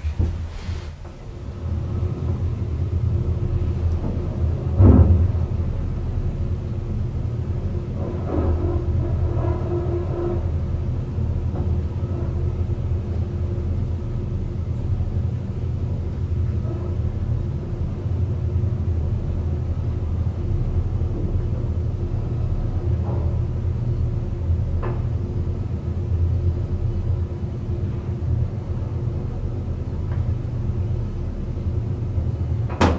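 1971 traction elevator car riding down its shaft: a steady low rumble with a faint hum that builds over the first couple of seconds as the car gets under way and then holds level, with a single knock about five seconds in.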